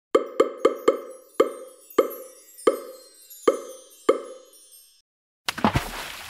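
A run of nine identical cartoon plop sound effects, each a short pitched pop that rings briefly, quick at first and then slowing. After a brief silence a liquid splashing sound effect starts near the end.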